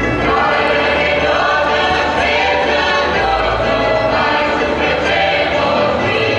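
A choir of several voices singing a South Slavic folk song together, in long, bending held lines.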